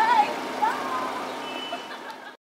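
High-pitched voices, wavering in pitch, over a steady background hum that fades out toward the end.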